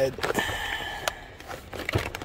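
Strong adhesive tape being peeled off a small cardboard box: a rasping tear starting about a third of a second in and lasting most of a second, then a few light clicks of cardboard being handled.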